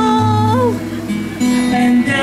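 Live acoustic guitar music with singing: a voice holds one long note that bends upward and stops under a second in, over steady low bass notes.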